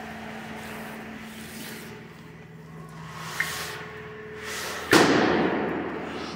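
A steady low hum, then about five seconds in a sudden loud rush of high-pressure water spray that starts abruptly and fades a little.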